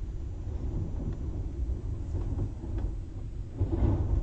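Steady low background rumble with a few faint light taps as small paper pieces are pressed down on the craft mat by hand.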